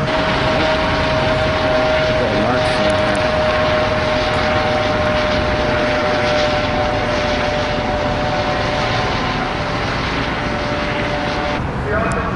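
Police helicopter overhead, its engine and rotor giving a steady roar with a held whining tone, which stops abruptly near the end.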